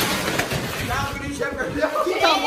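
Crinkling and rustling of plastic garbage-bag sacks with hopping steps on a tiled floor during a sack race, with voices shouting from about a second in.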